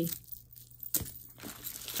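Loose costume jewelry being handled: light clicks of beads and a crinkling plastic bag, with one sharper click about halfway through.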